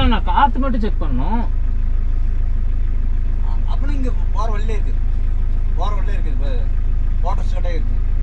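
Mahindra Scorpio's engine idling with a steady low rumble, heard inside the cabin, while people's voices talk at intervals over it.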